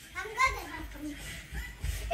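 Indistinct children's voices and chatter, soft and unclear, with a low rumble near the end.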